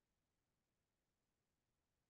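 Near silence: the recording's faint noise floor only.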